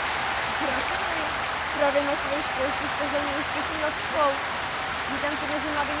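A voice drawing out 'pomalu' (slowly) again and again, over a steady hiss.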